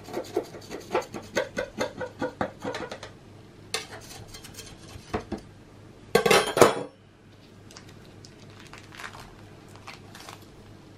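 Kitchen knife scraping and tapping along the sides of a metal baking tray, about four quick strokes a second, loosening a baked Swiss roll sponge from the tin. A few scattered ticks follow, then a louder clatter lasting about half a second, just after six seconds in.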